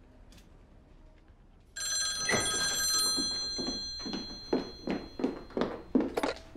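Old rotary desk telephone's bell ringing: one ring starts suddenly about two seconds in, its tones lingering and fading. A quick run of short knocks follows, about three a second.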